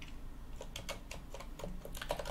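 Computer keyboard being typed: a quick run of key clicks.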